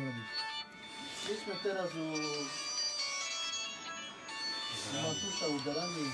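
A man talking in short stretches, with a high electronic melody of short beeping tones playing behind the voice.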